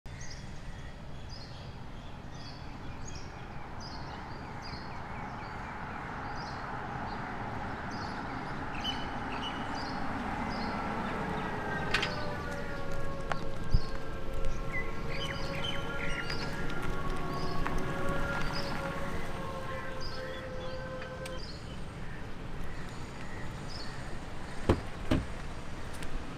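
Hyundai Ioniq 5 electric car driving up slowly, with no engine note, only tyre and road noise that grows as it nears. A bird chirps over and over throughout. For about ten seconds in the middle a steady set of tones sounds over it, and a couple of sharp knocks come near the end.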